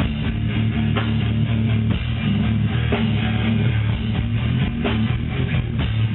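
Rock band playing live: heavy guitar and bass hold low chords, with a sharp hit about once a second.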